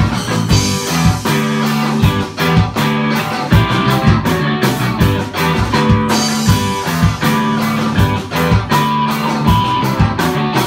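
Live band playing an instrumental passage of a ska song, with electric guitar, bass guitar and drum kit and no vocals, loud in a small room.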